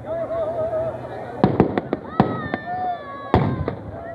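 Firecrackers packed inside a burning Ravana effigy bursting with sharp bangs: a quick run of four or five about one and a half seconds in, and single loud bangs a little past two seconds and near the end.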